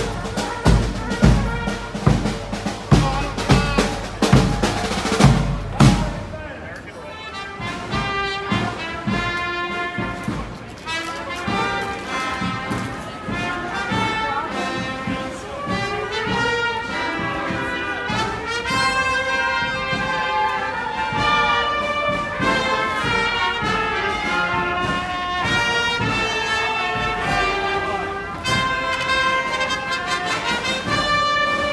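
Street marching band: a bass drum beats steady strokes, about two a second, for the first six seconds or so, then the brass takes up a melody that carries on to the end.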